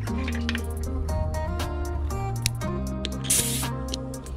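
Background music throughout; about three seconds in, a short hiss of air as an air chuck is pressed onto a tire valve stem.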